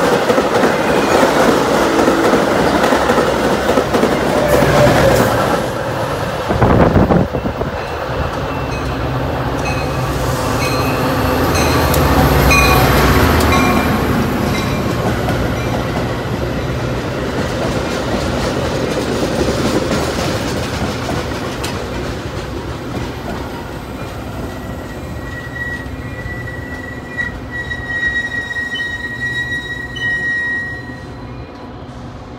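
Metra bilevel commuter cars rolling along the rails as they slow into the station, with a loud clunk about seven seconds in. The diesel locomotive of an approaching train runs under it, and a thin high wheel or brake squeal rises near the end.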